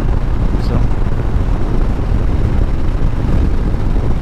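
Milwaukee-Eight 114 V-twin of a 2021 Harley-Davidson Street Bob cruising steadily at freeway speed, a constant low rumble mixed with wind rush on the microphone.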